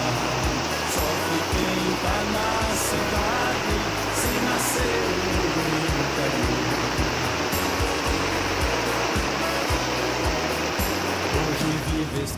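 Steady rushing of muddy runoff water flowing through a yard, heard with background country music with a regular beat.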